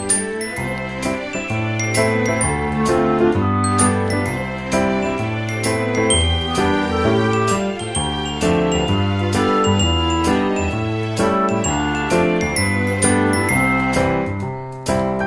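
Background music: a bright, tinkling bell-like melody over a stepping bass line with a steady beat.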